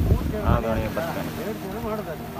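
Fishing boat's engine running steadily under way, with water rushing along the hull and wind buffeting the microphone.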